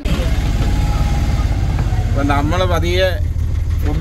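Auto-rickshaw engine running, a steady low rumble heard from inside the passenger compartment.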